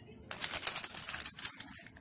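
Shiny plastic wrapper of a Keebler Vienna Fingers cookie package crinkling as it is handled and turned. It is a dense run of crackles starting about a third of a second in and thinning out near the end.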